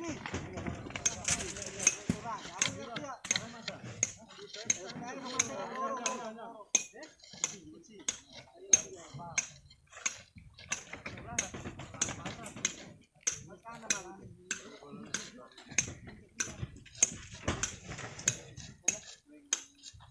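Hard clinks and knocks of stone, a few each second at irregular intervals, with muffled voices in the background at times.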